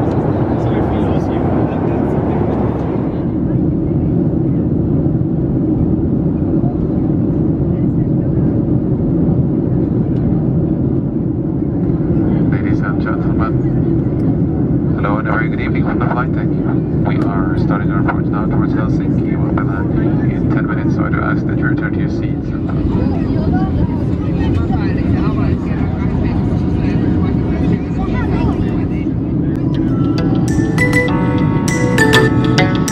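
Steady low roar of a Boeing 737-700's jet engines and airflow heard inside the cabin in flight. The first few seconds are busier cabin noise with clicks, and muffled voices come through in the middle.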